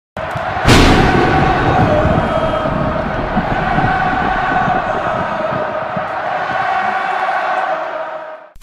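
Logo intro sound effect: a loud hit about half a second in, then a sustained crowd-like roar with a steady held tone under it, fading out near the end.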